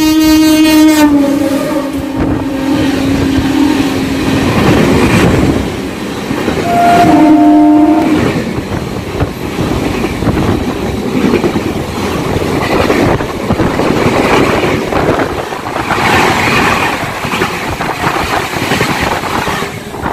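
A passing Indian Railways train's locomotive horn, held for several seconds and dropping in pitch about a second in as it goes by, then a second short horn blast about seven seconds in. The LHB coaches of the 13006 Amritsar–Howrah Mail then rush past close by with a loud rumble and the clatter of wheels over the rails.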